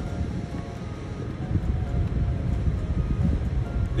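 Wind buffeting the microphone: an uneven low rumble, with a few faint steady tones above it.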